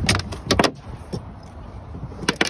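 A catfish landing and flopping on a fiberglass boat deck: a few sharp knocks in the first second or so, then quieter.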